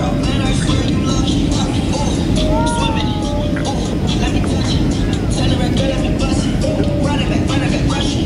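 Hip-hop track: a voice rapping over a beat with heavy bass and an evenly repeating hi-hat pattern, with a short wavering vocal note about three seconds in.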